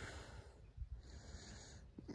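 Near silence: faint background noise, with one brief soft sound just before a second in.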